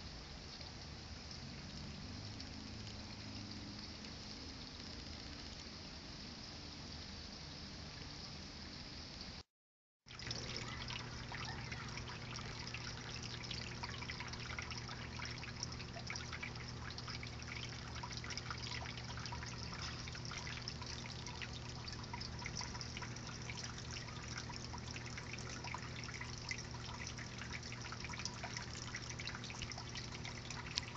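Steady trickling water with fine crackle over a faint low hum. It drops out for about half a second some nine seconds in, then comes back louder.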